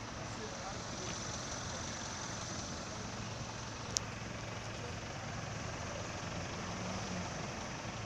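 Steady street noise with the low hum of minibus engines running along a line of parked maxi taxis, and one sharp click about four seconds in.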